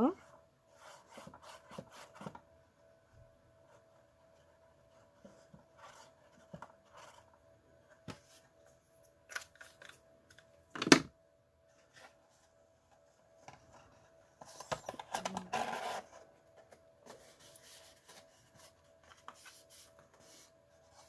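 Handling of patterned cardstock and a liquid glue pen: scattered soft rustles and taps, one sharp click about eleven seconds in, and a stretch of paper rustling around fifteen seconds as the glued box is picked up and squeezed into shape.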